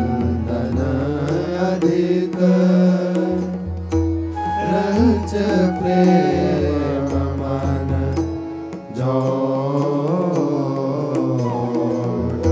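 Devotional Hindi verse sung as a chant with musical accompaniment: a melodic voice line over low sustained notes, with light, regular percussion ticks.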